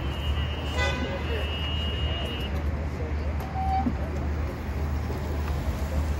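Outdoor road ambience with a steady low rumble, a brief horn toot about a second in, and a thin steady high-pitched tone that stops about halfway through.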